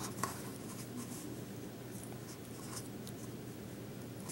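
Faint rubbing and a few light clicks of hands handling a small squishy toy figure and its red plastic capsule, over a low steady hum.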